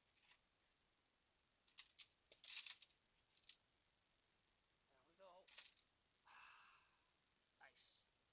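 Faint crackling and rustling of a small plastic pot and wet soil as a plant's root ball is worked free: a few light clicks about two seconds in, and a short scrape between six and seven seconds. Otherwise near silence.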